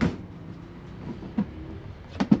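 A sharp knock of a clear plastic storage container being handled on a steel tabletop, then a softer knock about a second and a half in, over a low steady rumble.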